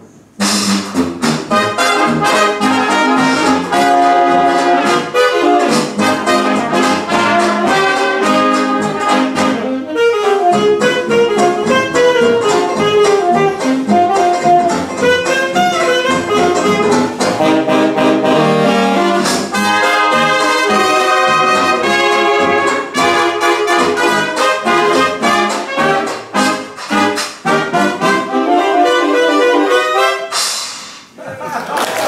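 Traditional jazz big band playing a 1920s-style arrangement: trumpets, trombone and saxophones together over a steady beat from the rhythm section, after a brief break right at the start.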